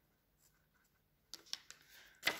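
Faint scratching of a pen writing on paper, a few short strokes beginning past the middle.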